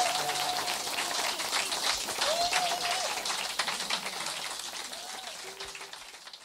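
Audience applauding after the song ends, with a few voices calling out from the crowd; the clapping fades away steadily.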